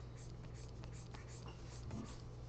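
Faint scratching strokes of a stylus on a drawing tablet's surface, over a steady low electrical hum.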